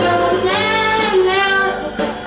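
A young girl singing a jingle into a handheld microphone over an instrumental backing track, her voice moving through several held notes.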